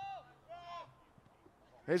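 Two short, faint, high-pitched shouts in the first second, like players calling out on the pitch, then a near-quiet gap. The commentator starts speaking right at the end.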